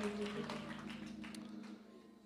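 Church organ holding a low sustained chord that slowly fades away, with a few faint clicks.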